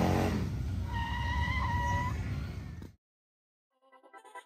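A column of large touring and cruiser motorcycles riding past at low speed, engines rumbling, the nearest one's pitch rising and then falling as it passes. About a second in, a steady high tone sounds for about a second over the engines. The sound cuts off suddenly about three seconds in.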